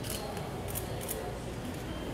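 A few camera shutter clicks over steady low room murmur.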